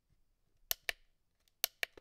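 Mode button on a solar LED wall light being pressed twice, each press a quick pair of sharp plastic clicks; the button cycles the light through its three lighting modes.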